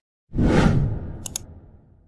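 A whoosh transition sound effect that starts suddenly about a third of a second in and fades away over about a second and a half, with two brief sharp ticks in the middle.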